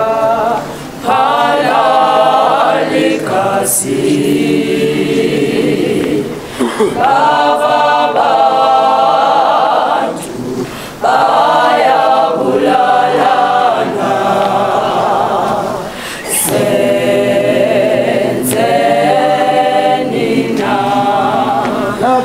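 Mixed gospel choir of women's and men's voices singing a cappella in harmony, in long phrases with brief breaks between them.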